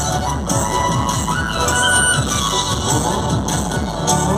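Live stage-show band music played loud through the PA system, heard from among the audience.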